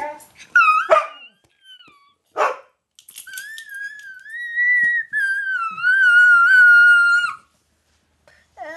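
A dog whining in high, thin, wavering calls: a few short rising-and-falling whines in the first two seconds, then one long whine of about four seconds that cuts off about a second before the end.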